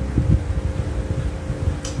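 A running fan: a steady hum with an uneven low rumble. A short hiss comes near the end.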